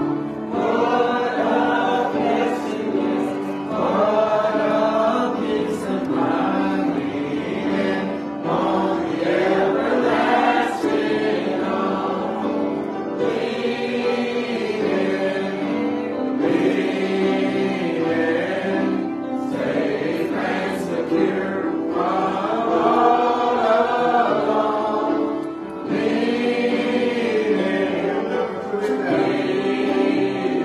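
Church congregation singing a gospel song together, many voices carrying on without a break.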